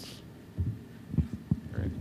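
A few soft, low thumps in a quiet room, the kind of handling noise a microphone picks up when it is touched or moved. One comes a little over half a second in and several more in the second half.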